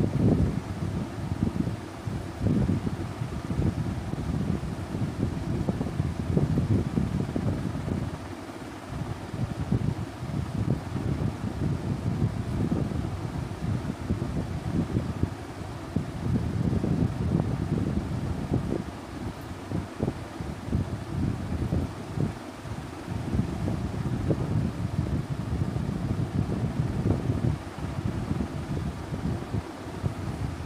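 Continuous low rumbling noise with an uneven, gusty flutter, like moving air buffeting the microphone.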